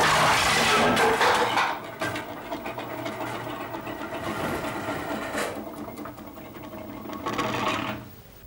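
Plates and dishes crashing as they are swept off a dining table, a loud crash in the first couple of seconds. A quieter, continuous rattling sound follows.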